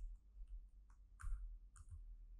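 Faint computer keyboard keystrokes as a word is typed: about four separate clicks, the loudest a little over a second in.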